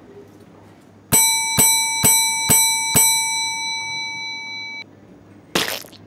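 Chrome desk service bell struck five times in quick succession, about two strikes a second, its ringing cut off suddenly. A short loud crash follows near the end as the bell comes down on the cartoon creature.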